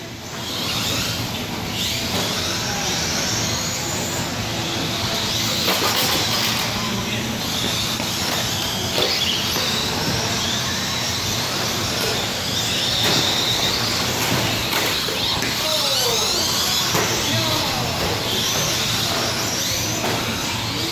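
Several electric RC stadium trucks racing: their motors whine, rising and falling in pitch again and again as they speed up and slow through the corners, over a steady hall noise.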